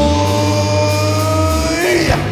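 Live rock band holding a sustained chord: the drums drop out while guitar or keyboard tones and a low bass note ring on, one note bending slightly upward. The bass cuts off shortly before the end.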